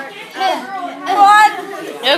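Overlapping voices chattering, with one louder exclamation about a second in.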